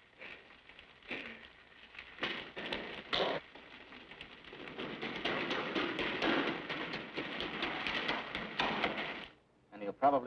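Irregular splashes and steps in shallow water inside a concrete storm drain. From about halfway through a denser rush of water noise builds, then cuts off suddenly shortly before the end.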